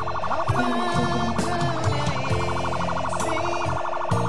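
Background music with a police pickup's electronic siren cutting in suddenly and warbling rapidly and steadily over it.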